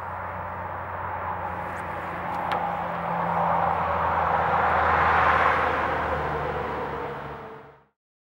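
A steady rushing noise with a low hum beneath it, growing louder to a peak about five seconds in, then fading out just before the end.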